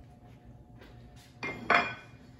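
A white plate set down on the kitchen counter: two quick knocks near the end, the second the loudest, with a short clink.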